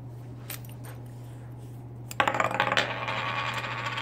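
Small plastic toy tire rolling on a hard tabletop, then rattling and wobbling down flat like a spun coin, starting about two seconds in, with a faint click before it.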